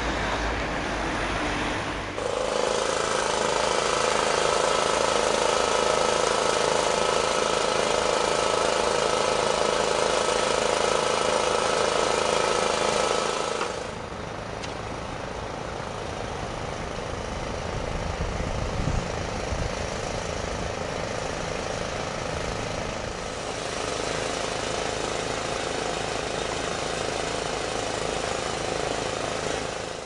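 A motor running steadily, with a couple of steady tones over a mechanical drone. It changes character abruptly about 2 seconds in, again about 14 seconds in, and again near 23 seconds in.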